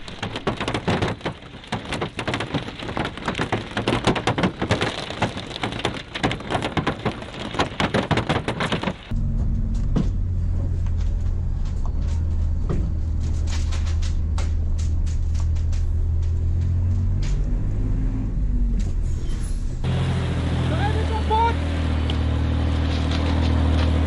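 Fireworks going off inside a bus: a dense, rapid crackle of many small bangs for about nine seconds, ending abruptly. After that a steady low rumble with scattered pops.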